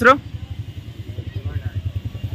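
A vehicle engine idling with a low, rapid throb. A few words of speech come at the very start.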